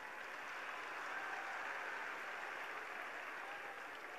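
A large crowd applauding from a distance, a steady wash of clapping that swells a little about a second in and then eases off.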